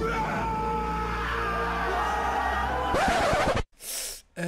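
Film soundtrack: music playing under a crowd shouting and cheering, cutting off abruptly about three and a half seconds in.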